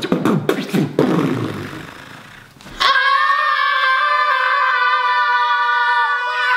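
Human beatboxing: quick percussive mouth clicks and kick sounds, then a long fading hiss. About three seconds in, a loud, steady, high-pitched held shout from several voices breaks in and holds.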